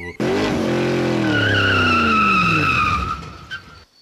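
Race car sound effect: an engine note that drops steadily in pitch while tyres squeal over it, then fades out shortly before the end.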